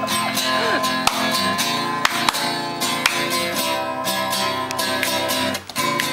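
Acoustic guitar strummed in a steady rhythm of chords, with a short break near the end.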